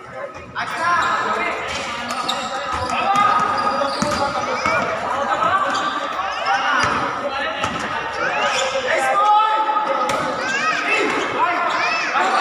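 A basketball bouncing on a hard court floor and sneakers squeaking in short chirps as players move, with players' voices calling out in a reverberant hall.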